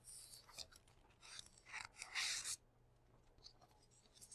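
Faint rustling and brushing of paper in a few short strokes, the longest about two seconds in, as textbook pages and sheets are handled. A faint low hum runs underneath.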